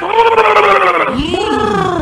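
A woman wailing in distress: one long, wavering cry that falls slightly in pitch, then a second, shorter rising-and-falling cry about a second in.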